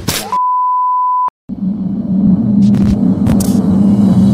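Sound effects of a channel logo card: a quick whoosh, then one steady beep lasting about a second, a brief cut to silence, and a low droning hum with a few short swishes over it.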